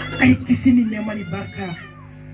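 A high-pitched, wavering voice in drawn-out, sliding tones, loudest just after the start and fading towards the end.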